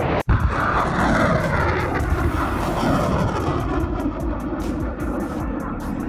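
Roar of a rocket in flight, broken by a brief gap about a quarter second in. After the gap the roar carries a tone that falls steadily in pitch as the rocket recedes.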